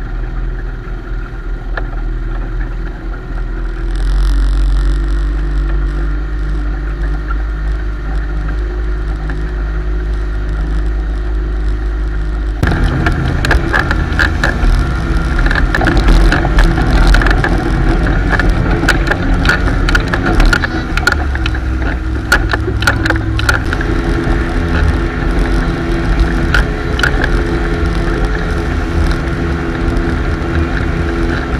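Motorboat engine running steadily under way while towing a tube, with the wake's water rushing behind. About a third of the way in the sound turns louder and rougher, with wind and spray crackling on the microphone.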